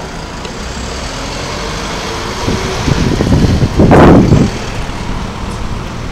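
City street traffic, with a vehicle passing close by that swells to a peak about four seconds in and then fades.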